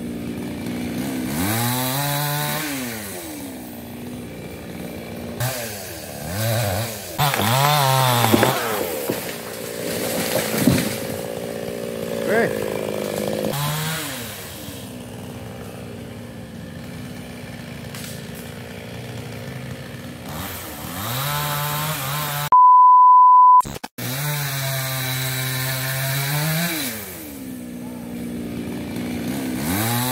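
Two-stroke chainsaw revving up and down several times, each rev rising and then falling away. About two-thirds of the way through it is cut by a steady electronic beep lasting just over a second.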